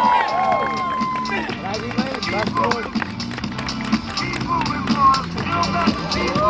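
Background music with voices and shouts from an onlooking crowd and scattered taps; a long held note ends about a second and a half in.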